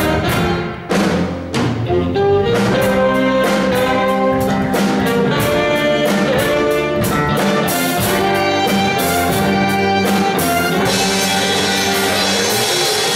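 Live band playing an instrumental tune: two saxophones over drum kit, electric bass, electric guitars and keyboard, with a steady drum beat.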